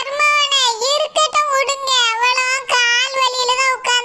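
A high-pitched, sped-up cartoon voice singing in long held, slightly wavering notes, with a few brief breaks.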